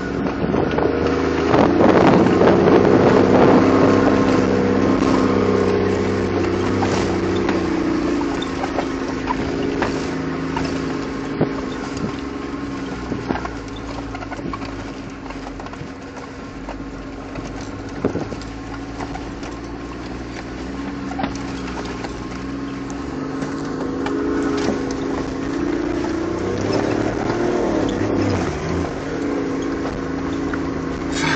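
Off-road vehicle's engine heard from inside the cabin while driving a rough, rocky dirt track, running steadily and louder for a few seconds near the start and again near the end. Scattered knocks and rattles from the bumps.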